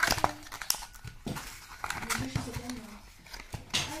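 Cardboard and foam packaging being handled: sharp crinkles and clicks as a card insert is pulled from a foam tray and opened, loudest right at the start, with a voice talking over it.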